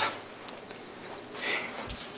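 A person sniffing once through the nose, short and close to the microphone, about one and a half seconds in, over quiet room tone.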